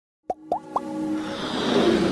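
Logo-intro sound effects: three quick pops, each rising in pitch, then a swelling build-up of sustained tones and hiss.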